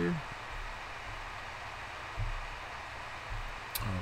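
Steady hiss of microphone room tone in a pause between words. There is a faint low thump about two seconds in and a short click near the end.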